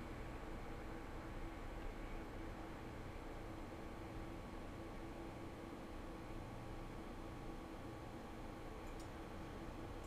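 Steady low background hiss and hum of room tone, with a single faint click near the end, like a mouse click.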